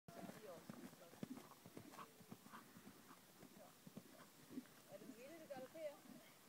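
Horse's hooves beating on soft dirt at a canter, the knocks thinning out as the horse moves away. Voices come in near the end.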